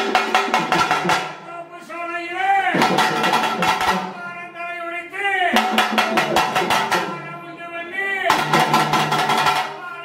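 Live drumming with rapid strokes under a pitched melody. The melody comes in phrases of a few seconds, each ending with a bend in pitch, with short lulls between them.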